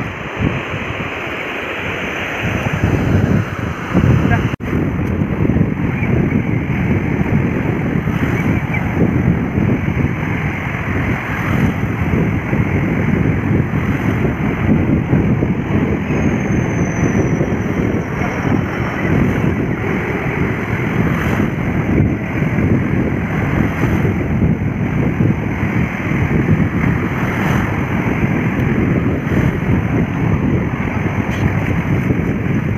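Wind buffeting a phone microphone on the open shore, a loud, steady, gusting rumble, over the wash of surf breaking in the shallows.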